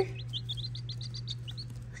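Baby chicks peeping: a quick run of short, high peeps that thins out near the end.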